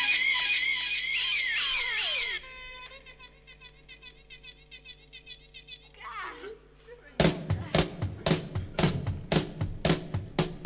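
Recorded funk music played back: a loud, wavering electric guitar line with a long falling glide, then a quieter passage with a repeating figure, then a drum beat that comes in sharply about seven seconds in.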